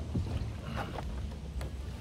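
Water moving around a kayak under a steady low rumble, with a few faint, light knocks.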